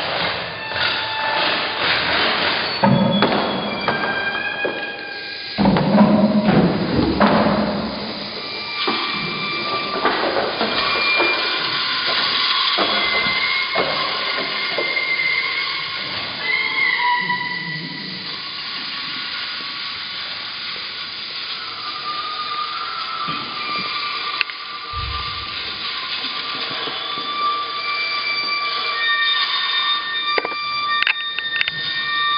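Experimental music performance: scattered short, held whistle-like tones at several different pitches, one gliding briefly, over knocks, thuds and handling noise that are busiest in the first ten seconds, with a low thump about 25 seconds in.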